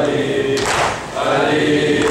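Voices chanting a Shia mourning lament (noha) in a steady rhythmic refrain, with a sharp accent about every second and a half and a brief break about halfway through.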